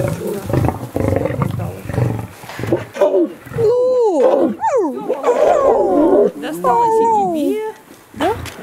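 Lions growling and snarling at close range while squabbling over pieces of meat. Low rough growls in the first few seconds give way to higher calls that rise and fall, with a harsh snarl in the middle.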